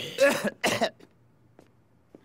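A man coughing in a short fit of harsh coughs in the first second, choking on cigar smoke blown in his face.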